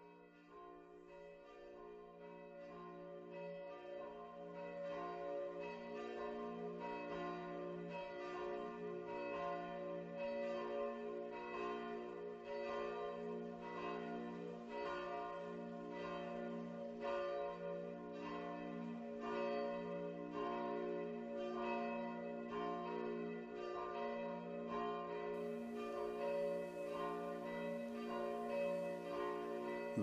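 Church bells pealing: several bells struck over and over in a steady rhythm, their tones ringing on and overlapping, fading in over the first few seconds.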